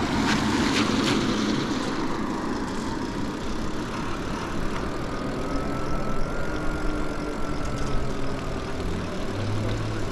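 E-bike riding along a wet road: a steady rush of wind and tyre noise, with a faint whine that rises and then falls in pitch midway.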